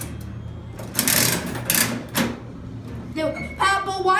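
The metal coin mechanism of a coin-operated ball-vending machine being cranked: a loud rattling ratchet for about a second, then a short sharp clack. A voice comes in near the end.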